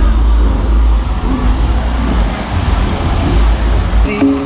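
Outdoor street-festival ambience: a heavy low rumble that swells and dips throughout, with faint crowd voices underneath.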